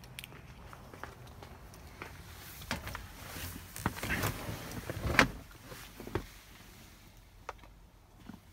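Someone climbing into a truck's cab: scattered knocks, clicks and rustles of handling inside the cab, with one sharper knock about five seconds in.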